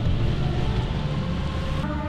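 Steady low road rumble inside a moving car, tyres running on a wet street.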